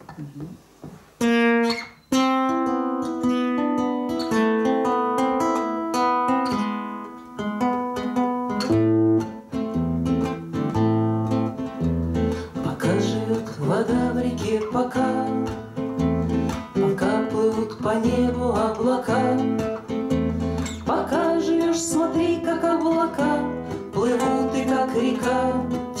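Two acoustic guitars playing a song's introduction. Single picked notes start about two seconds in, and deeper bass notes join about nine seconds in, filling out a steady fingerpicked accompaniment.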